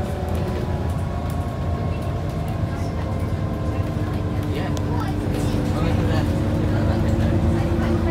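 Scania OmniCity single-deck bus heard from a passenger seat while under way: steady diesel engine rumble and road noise, with a whine that rises slightly in pitch over the second half as the bus picks up speed.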